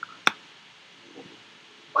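A single sharp click about a quarter of a second in, over a low steady hiss.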